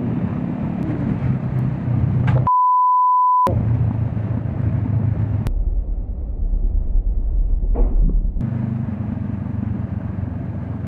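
Honda CB500X parallel-twin engine running with wind and road noise while riding. About 2.5 s in, a one-second 1 kHz censor bleep replaces all other sound; from about 5.5 s to 8.5 s the sound turns to a muffled low rumble before the riding sound comes back.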